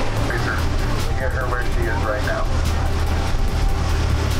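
Tour boat's engine running with a steady low drone, with voices talking over it.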